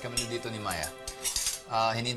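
Metal cutlery clinking against a dinner plate as it is handled, in several short, sharp clinks, over background music with sustained tones.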